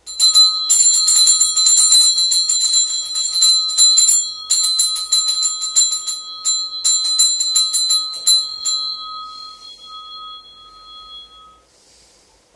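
Altar bell shaken rapidly at the consecration of the chalice, a fast run of strokes for about nine seconds with two short breaks, then its tone dying away.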